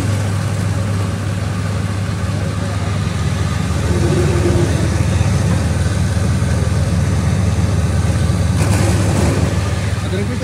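Electric cabbage cutter machine running steadily: a loud, even motor hum with the noise of its rotating cutting disc chopping cabbage finely.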